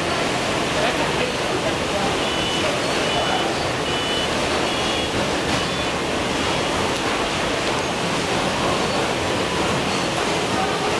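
Steady rushing noise of a pepper packing line's machinery running, with a few short high-pitched chirps a couple of seconds in.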